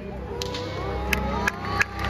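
Audience calling out and starting to clap, with a few sharp, close single claps from about a second in, over low stage music.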